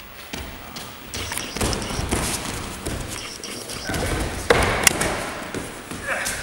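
Bare feet shuffling and thudding on gym mats as two grapplers push and pull each other standing, with two sharp slaps about four and a half seconds in.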